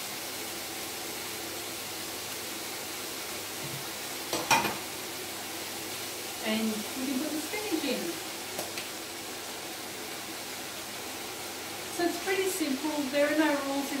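Chopped bacon, onion and carrot sizzling steadily in a frying pan while a spatula stirs and scrapes the ingredients in. One sharp clack of the utensil comes about four and a half seconds in.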